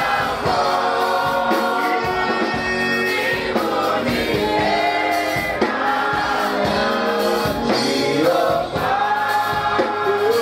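A church congregation singing a gospel worship song together, many voices at once.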